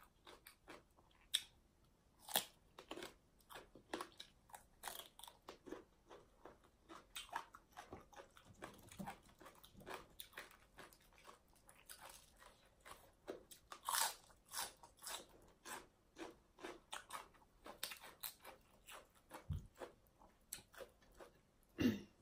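Close-up chewing and crunching of crisp raw vegetables such as cabbage: many short, irregular crunches and wet mouth clicks, fairly quiet. A soft low thump comes near the end.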